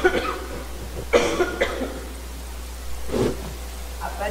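A woman's dry cough: three coughs about a second or two apart, the first two loud and the last one softer.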